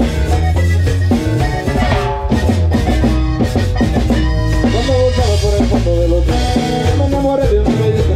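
A live cumbia band playing with drum kit, electric bass and guitar.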